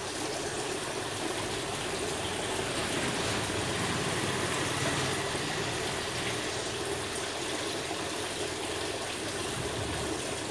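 Water pouring and splashing steadily into a plastic fish tub, churning the surface into froth.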